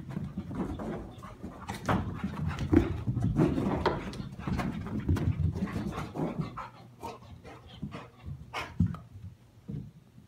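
A silver Labrador and a Chihuahua at play: panting and scuffling, with irregular short knocks and thumps.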